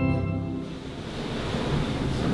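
A church organ holds a final sustained chord, which cuts off about half a second in. After it comes a low, even rushing room noise.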